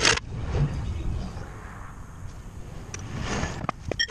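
A sharp metallic clank, then a few light knocks near the end, as a steel jack stand is handled and worked out from under a truck's axle, over a steady low outdoor rumble.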